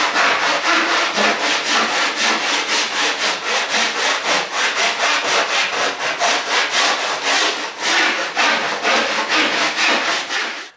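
A kerfing plane's saw blade ripping along the grain of a pine board, in short, rapid rasping strokes about four a second. It is cutting a shallow guide kerf just on the waste side of a marked line, to steer a rip saw later.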